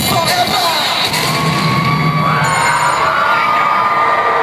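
Live hip-hop music ends about half a second in, and a concert crowd cheers and screams, with long high-pitched screams rising over the noise from about a second in.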